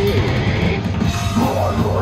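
Live rock band playing loudly, with electric guitar, bass guitar and drum kit.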